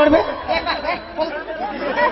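Speech: actors talking through stage microphones.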